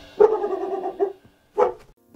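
A dog vocalizing: one drawn-out, high-pitched whining call of nearly a second, then a short second yip.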